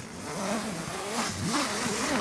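Tent door zipper being pulled open by hand in uneven strokes: a raspy buzz whose pitch rises and falls with the speed of the pull, growing louder.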